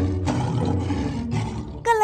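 Lion roar sound effect: a long, rough roar with a deep rumble, dipping briefly about a second and a quarter in and fading just before the end.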